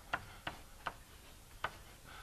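Chalk clicking against a blackboard while symbols are written: four short, sharp taps at uneven intervals, faint.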